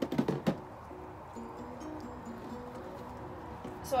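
A few sharp clicks and knocks in the first half second as paint supplies are handled, then faint music with a slow stepped melody.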